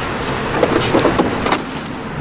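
Power sliding side door of a 2016 Honda Odyssey unlatching and motoring open, with a few sharp clicks from the latch and mechanism during the first second and a half.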